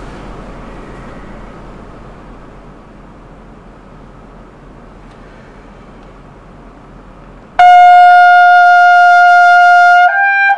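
Rotary-valve trumpet entering suddenly near the end with one loud, held high note, about F5, after several seconds of low, steady room noise.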